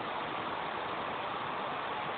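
Steady, even whir of cooling fans in a rack of server and network equipment.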